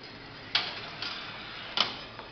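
Marbles clicking and rolling through a homemade marble run: a sharp knock about half a second in with a short rattle after it, a lighter click near one second, and another sharp knock near the end.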